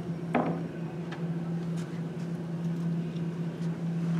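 Steady low electrical hum of a small room's sound system, with a few faint clicks of a plastic water bottle being picked up and opened.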